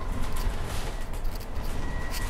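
Bus in motion heard from inside its upper deck: a steady low engine and road rumble with a faint steady high whine.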